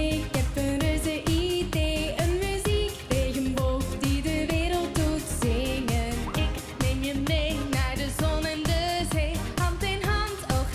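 Live pop music: female lead vocals sung into handheld microphones over a pop backing track with a steady beat.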